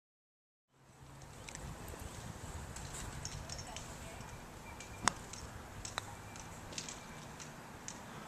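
A putter striking a golf ball with one sharp click about five seconds in, followed by a fainter click a second later. The clicks sit over steady low outdoor rumble with faint high chirps, which starts after a moment of silence.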